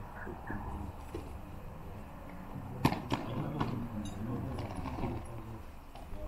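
Faint, low murmur of distant voices over outdoor background, with one sharp click about three seconds in and a few lighter clicks soon after.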